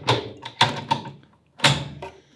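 A CAE Racing gear shifter for an Audi RS4 B5, worked hard by hand: about four sharp metallic clacks as the lever is snapped through the gates.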